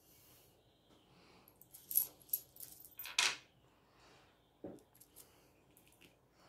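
Small hard crystal pieces clicking and clinking against each other as they are handled and set down, a scattered run of light clinks loudest about two and three seconds in, followed by a couple of soft taps near the end.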